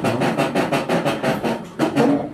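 A fast drum roll, about eight evenly spaced strokes a second, running up to the end.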